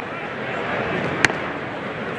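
Steady ballpark crowd murmur, with one sharp pop about a second in as a 96 mph pitch smacks into the catcher's mitt.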